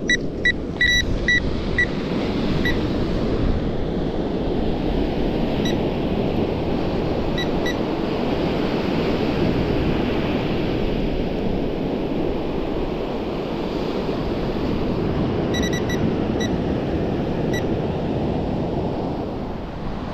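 Electronic bite alarm on a surf rod giving short high beeps: a quick run of five or six in the first two seconds, then scattered single and paired beeps, as the line is pulled by the surf. Under it, the steady rush of surf on the beach.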